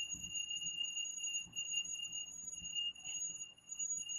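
A steady high-pitched electronic whine, two thin tones with brief dropouts, over faint background hiss.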